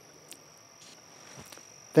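Faint, steady high-pitched insect trill running on without a break, with a few soft clicks.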